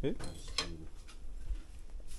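Several light clinks and knocks of a spoon and dishes being handled, the spoon working in a plastic mixing bowl of pancake batter.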